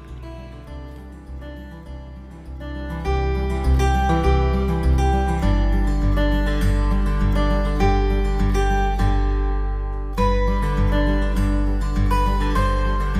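Background music of plucked-string notes, quiet at first, growing louder about three seconds in and filling out with a deeper bass from about five seconds in.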